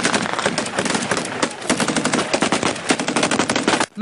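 Machine-gun fire from a belt-fed machine gun: rapid shots in a near-continuous stream that stops just before the end.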